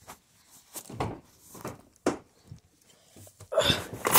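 Scuffs, rustles and knocks of a person climbing into a car's driver seat, with a louder bump near the end.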